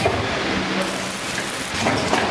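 Automatic packaging machine running: a steady hum and mechanical clatter, with a stronger stroke just at the start and another near the end.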